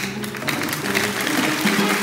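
Studio audience applauding over TV show music with steady held notes; the applause builds gradually.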